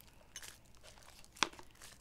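A tightly packed box of cake-decorating piping tips being handled as the tips are worked out: faint scrapes and rustles, with one sharp click about one and a half seconds in.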